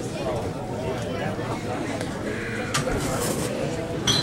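Indistinct chatter of a crowd of spectators in a hall, many voices overlapping, with a single sharp knock a little before three seconds in.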